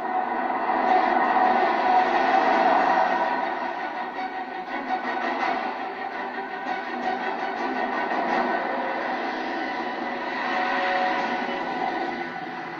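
Action-film soundtrack heard through a television's speakers: a steady vehicle drive-by drone with sustained tones held over it, swelling louder a second or so in and easing off by the middle.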